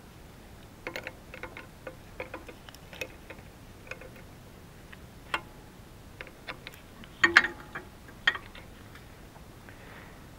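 Irregular small metallic clicks and clinks of hydraulic hose fittings being handled and threaded onto a backhoe's control valve, with the loudest cluster about seven seconds in.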